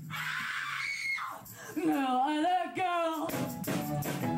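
Live band performance led by a woman's voice. It opens with a noisy, scream-like cry lasting about a second, then a brief lull, then wavering sung notes with a wide vibrato.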